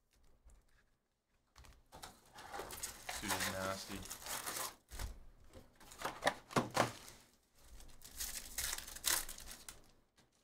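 Trading card pack wrappers being ripped open and crinkled, in several bouts with a few sharp rips about halfway through.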